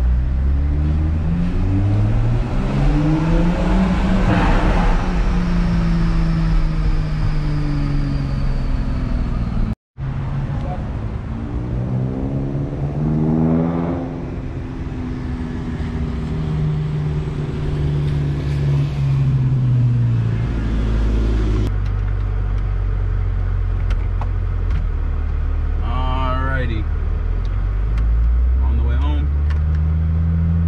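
Toyota Supra's engine heard from inside the cabin, its note rising as the car accelerates, holding, then rising again after a brief break and falling away as it eases off. Later the engine settles to a steady low drone, with two short wavering higher-pitched sounds near the end.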